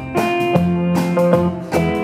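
Live band playing an instrumental passage: acoustic guitar strummed in chords about twice a second over upright double bass.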